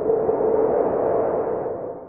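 End-card sound effect: a swelling synthesized whoosh with a steady hum-like tone running through it, fading away near the end.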